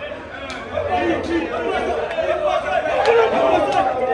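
Many men's voices talking and calling out over one another in a crowded dressing room, with a few sharp knocks in between.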